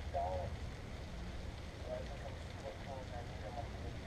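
A man's voice, faint and brief, heard twice, over a steady low rumble.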